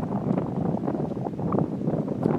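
Gusty wind blowing across the microphone: an uneven, low rushing noise.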